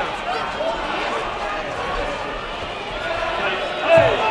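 Several voices overlapping across a sports hall: shouted coaching and chatter from around the mat, with a louder shout near the end.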